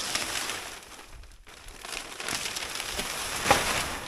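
Plastic sheeting crinkling and rustling as it is pulled off a wire cage and bundled. It eases off briefly about a second and a half in, then comes back with a louder crackle near the end.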